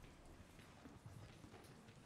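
Near silence in a concert hall, with faint, irregular clicking footsteps on the stage floor.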